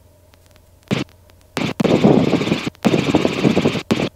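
Aircraft radio heard through a helicopter headset intercom: a short squelch burst about a second in, then from about a second and a half a loud, static-filled transmission in two stretches with clicks, over the steady low hum of the Robinson R22 helicopter.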